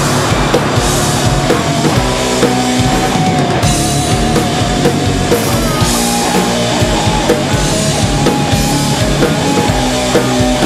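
Instrumental stretch of a heavy punk-metal song: loud electric guitars over a driving rock drum kit with cymbal crashes, and a held, wavering lead line on top.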